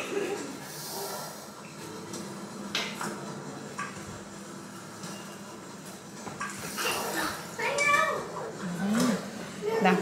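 Steady room noise with a few light taps in the first half, as a spatula spreads melted chocolate on a plastic sheet; from about six seconds in, people talk, getting louder toward the end.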